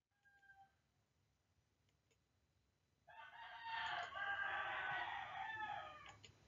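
A single long, pitched animal call lasting about three seconds, starting about three seconds in.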